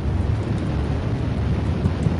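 A steady, low rumbling drone with a faint hiss above it: a dark ambient sound-design bed under the soundtrack.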